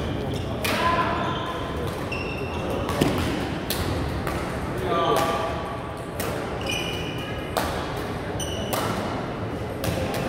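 Badminton rally in a large echoing hall: sharp cracks of rackets hitting the shuttlecock every second or so, with short high squeaks of court shoes on the floor and a steady murmur of voices from other courts.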